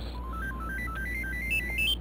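Motorola V3 RAZR flip phone playing its power-up tune: a quick run of short electronic tones that climbs in pitch in repeating steps, as the phone restarts once the unlock code has been accepted.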